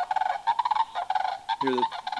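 Recorded sandhill crane unison call played back from a small handheld device: a pair calling together in a run of short, rapidly repeated calls in two different tones. A man's voice starts speaking near the end.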